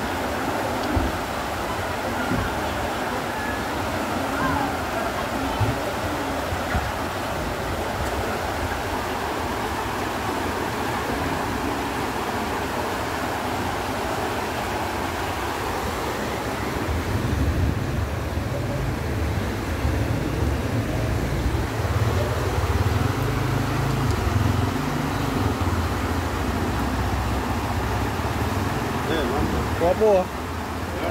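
Floodwater rushing along a street as a steady wash of noise. A deeper rumble builds in past the halfway point.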